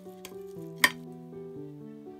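Metal spoon stirring rice in a glass baking dish, with one sharp clink of the spoon against the glass a little under a second in, over steady background music.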